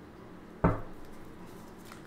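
A single sharp tap about half a second in, as a tarot card or the deck is set down on the tabletop.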